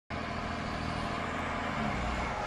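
2005 Mack Granite CV713 dump truck's diesel engine running at a steady low speed.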